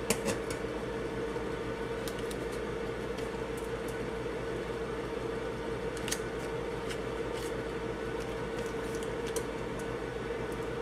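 A steady background hum with one constant tone, and a few faint clicks and taps from a knife slicing butter and pats of butter being set down on aluminum foil.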